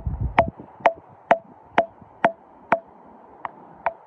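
A hammer striking a steel chisel set into the crack of a rock to split out a pyritised Harpoceras ammonite: sharp metallic strikes about two a second, each with a short ring, growing lighter near the end as the rock cracks open.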